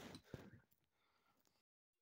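Near silence, with one faint click about a third of a second in and a moment of total silence near the end.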